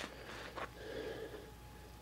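A faint breath, soft and noisy, about halfway through, over quiet room tone.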